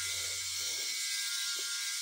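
VeroShave 2.0 rotary electric shaver running steadily while its heads are worked over scalp stubble: an even, high-pitched whir.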